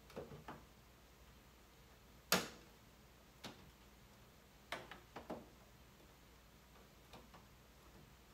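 Plastic top vent cover of an over-the-range microwave clicking as it is pressed and snapped into place: a handful of separate sharp clicks, the loudest about two seconds in.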